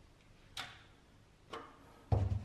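Two light clicks, about a second apart, from a galvanised metal back box and a spirit level being handled against a wall.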